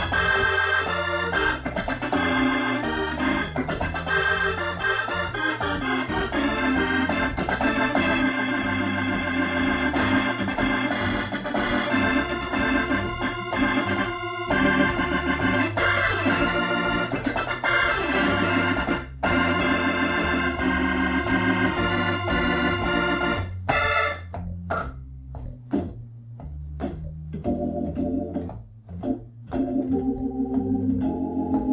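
Hammond B3 organ at full organ, with all upper-manual drawbars pulled out and the Leslie speaker on fast, playing loud, dense F-blues chords over a moving bass line in the style of a big-band shout chorus. From about 24 s it thins out into short, separated chord stabs.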